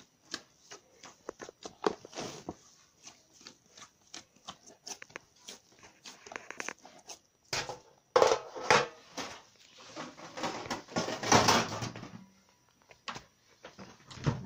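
Hands kneading a soft dough in a plastic bowl: a run of small, irregular squelching clicks and slaps. Partway through come louder rustling and knocking sounds.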